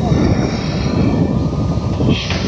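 Crawler excavators' diesel engines running steadily under load as they dig, a dense low mechanical sound.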